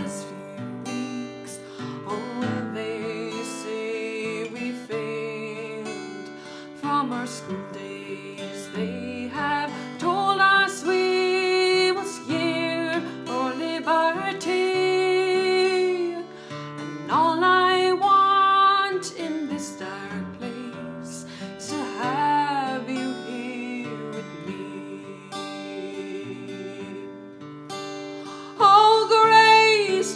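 Music: a woman singing with her own acoustic guitar accompaniment, played with a pick. Her voice comes in held, swelling phrases over the guitar.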